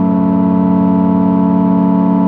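Sequential Prophet 12 polyphonic synthesizer playing a patch, holding one sustained chord steadily.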